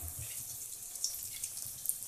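Paruppu vadai (chana dal fritters) deep-frying in hot oil in an aluminium kadai: a steady sizzle with a few faint crackles.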